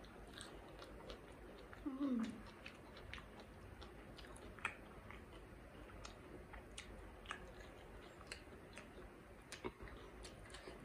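Close-miked chewing of a fried momo after a bite, with soft crunches and small wet clicks throughout. About two seconds in comes a short hummed voice sound that falls in pitch.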